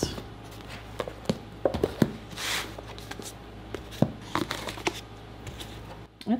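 Books being handled and stacked on a wooden table: scattered light knocks as they are set down, and a brief sliding rustle about two and a half seconds in.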